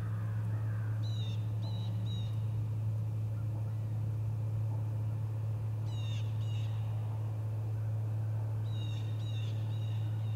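Short, high bird calls, singly and in clusters of two or three, a few times, over a steady low hum.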